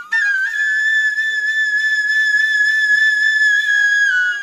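Background music: a flute holding one long, steady high note.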